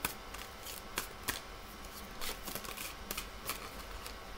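Oracle and tarot cards being handled, with about ten irregular light clicks and snaps of card stock.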